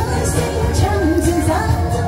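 A woman singing karaoke into a handheld microphone, her voice amplified over a pop backing track with a steady beat, holding wavering notes.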